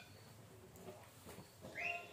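A cat meowing once near the end, a short call that rises and falls, over faint room tone.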